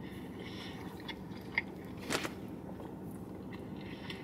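A man chewing a mouthful of cheesesteak: faint mouth sounds with a few small clicks, the strongest about two seconds in, over a steady low hum.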